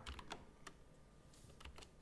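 A few faint, scattered clicks on a computer keyboard, with near silence between them.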